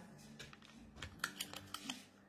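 A handful of faint, light clicks, about five in the second second, over a low steady hum.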